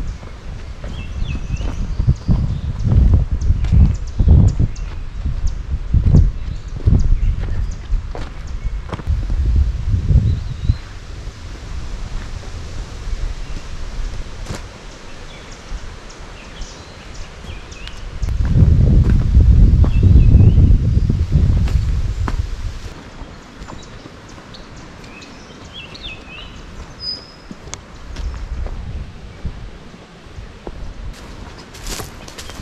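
Wind buffeting the microphone: a deep, uneven rumble that comes and goes in gusts and is heaviest for a few seconds past the middle. Birds chirp faintly behind it, and there are footsteps on loose, freshly graded dirt.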